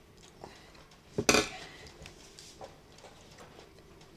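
Eating utensil knocking against a food container: one sharp, loud double clink about a second in, with a few fainter clicks around it, as someone eats from the container.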